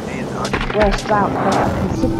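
Deep trailer-style boom hit about a second in, layered under narration and a soundtrack.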